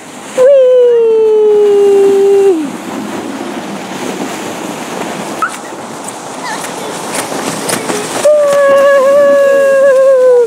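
A voice holds two long drawn-out notes, the first about two seconds long and falling slightly in pitch, the second near the end holding steady. Between them is the steady noise of a plastic sled being pulled over packed snow.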